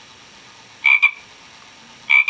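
Frog croaking: one short double-pulsed croak about a second in, part of a run of evenly spaced croaks.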